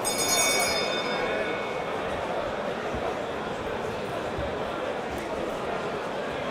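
Boxing ring bell struck once to start the round, ringing out and fading over about a second and a half. Steady crowd chatter follows.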